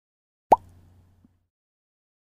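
A single short pop sound effect about half a second in, a quick rising 'bloop', trailing off into a faint low hum that fades within a second.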